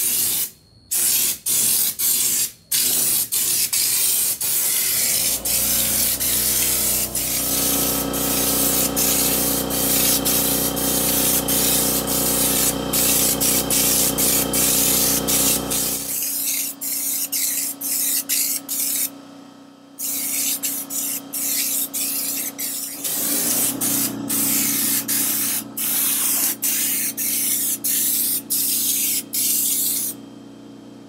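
Air-fed Raptor bed-liner spray gun hissing as it lays on a coat of black liner, in long bursts broken by short pauses where the trigger is released. Under it, an air compressor motor hums, cutting in about five seconds in, stopping near the middle and starting again a few seconds later.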